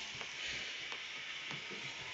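Steady background hiss with a few faint, short clicks spread through it.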